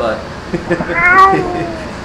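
A man says a word and then laughs, with one high, drawn-out note that falls slowly in pitch about a second in.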